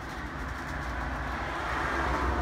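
A vehicle passing on the road, its tyre and engine noise growing louder as it approaches.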